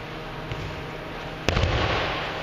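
A person's body landing on a judo mat in a breakfall from a kotegaeshi wrist-turn throw: one sharp slap and thud about one and a half seconds in, followed by a short rush of noise as the body and jacket settle on the mat.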